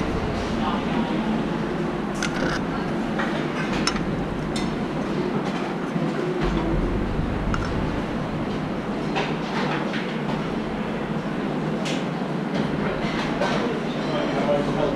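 Busy restaurant kitchen during service: a steady rumbling background with indistinct voices and scattered light clinks of metal trays, tweezers and plates.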